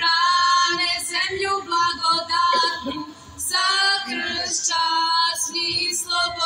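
A group of women singing a Serbian folk song together in close harmony, unaccompanied, in long held notes with short breaks between phrases.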